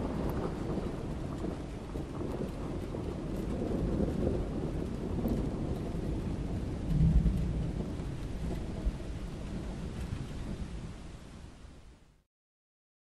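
Steady rushing noise with low rumbling swells, the biggest about seven seconds in, fading out near the end.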